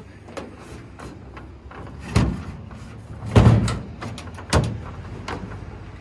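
Three dull thumps, the loudest about halfway through, with lighter knocks and rustling between, as the nylon cord tie-down over a fiberglass ladder in a metal pickup bed is hauled tight with a marlinspike.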